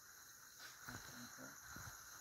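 Near silence: a faint, steady chorus of night insects such as crickets.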